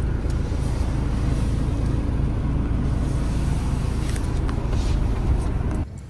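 A van's engine and road noise heard from inside the cab while driving, a steady low rumble that cuts off just before the end.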